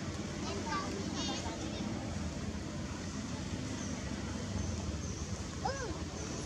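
Indistinct voices of people talking in the background over a steady low rumble, with a short rising-and-falling pitched call near the end.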